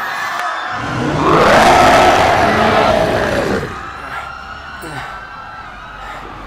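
A man's long, loud yell as a giant monster, rising and then falling in pitch, from about a second in to past three seconds, then fading to quieter sound.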